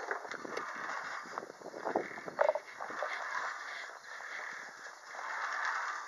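Outdoor ambience: a steady hiss with faint, irregular footsteps on dirt and a brief short sound about two and a half seconds in.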